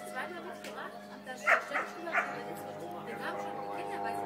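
A dog barking three times in quick succession, about a second and a half in.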